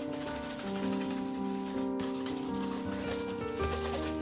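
A bristle shoe brush scrubbing a black leather Regal shoe in quick, even back-and-forth strokes, over soft background music.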